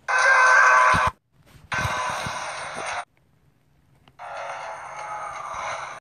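Cartoon trailer soundtrack music, heard in three short segments cut apart by silent gaps. It sounds thin, with no bass.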